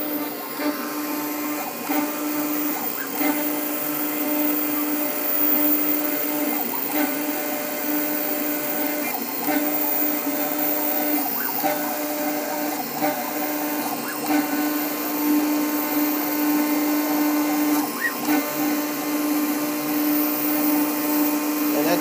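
New Hermes Vanguard 4000 engraving machine running, its spindle turning a diamond drag bit that engraves a corner flourish into anodized aluminum. It gives a steady motor whine that keeps dropping out and returning every second or two as the head moves.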